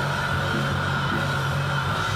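Live rock music: a distorted electric guitar under a singer shouting one long held note into a microphone.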